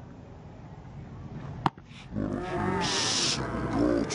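A pitched baseball smacks into the catcher's mitt with one sharp pop about one and a half seconds in, over low stadium ambience. A long, drawn-out shout follows and runs to the end.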